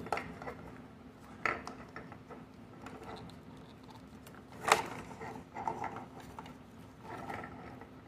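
Thin printed foil wrapper crinkling and tearing as it is peeled off a small plastic toy capsule, with scattered sharp clicks; the loudest snap comes about halfway through.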